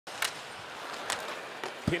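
Steady ice-hockey arena crowd noise with three sharp knocks from the play along the boards, spread across two seconds. A commentator's voice comes in at the very end.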